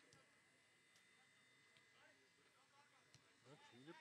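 Near silence with faint voices of people talking, a snatch about halfway through and more building near the end, and a few faint clicks.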